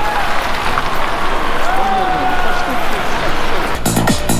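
City street noise: a steady hiss of traffic on a wet road, with faint voices in it. Electronic music with a steady beat cuts in just before the end.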